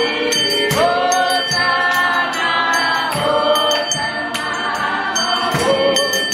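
Choir singing a hymn together, with a steady beat behind the voices.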